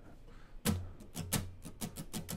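Acoustic guitar strummed in short, percussive strokes, a string of about half a dozen starting roughly two-thirds of a second in, as a different strumming rhythm is tried out.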